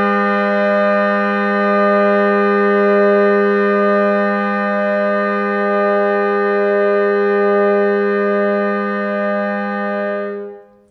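French harmonium (attributed to H. Christophe & Etienne, Paris, c.1868) sounding one long, steady chord on its free reeds. The chord is fed by air stored in the bellows reservoir, filled by a couple of pedal pumps beforehand rather than by continued pumping.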